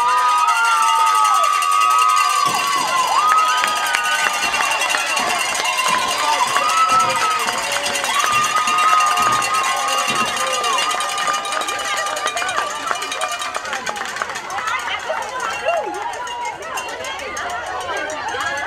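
A crowd of spectators shouting and yelling, with several long, drawn-out high yells in the first ten seconds or so, then looser, quieter crowd voices toward the end.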